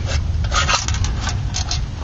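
A crumpled aluminium drink can riddled with BB holes being handled and moved against a wooden skateboard deck: a run of short scrapes and crinkles starting about half a second in.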